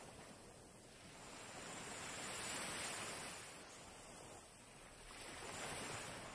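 Faint sound of small waves washing onto a beach, swelling and ebbing twice.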